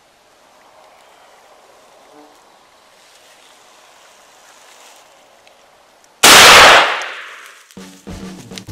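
A single shotgun shot from a 3½-inch magnum shell about six seconds in, very loud and sudden, its report dying away over about a second and a half.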